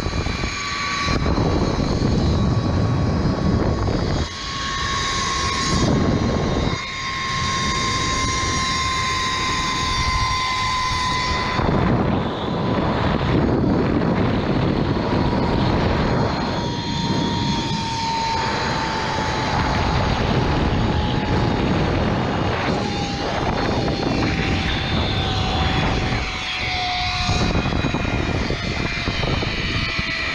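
ZipRider zipline trolley running along its steel cable: a thin whine that falls slowly in pitch through the ride, under loud wind rushing over the microphone that rises and dips.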